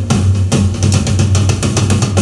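Isolated drum-kit track from a rock multitrack recording playing loud: kick drum and snare under a fast, even run of cymbal strokes.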